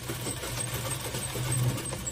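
Household sewing machine running steadily as it stitches a seam through layered fabric: a continuous fast mechanical whirr over a low hum, a little louder about three-quarters of the way through.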